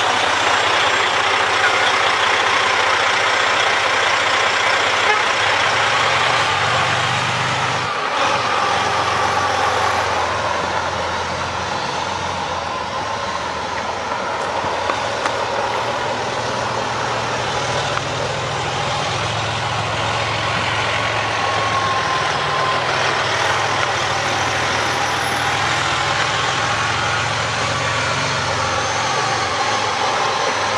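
Detroit Series 60 14-litre diesel of a Freightliner Columbia tractor truck running under way, its pitch rising and falling as it pulls around. It fades a little midway as the truck moves off, then grows louder as it comes back.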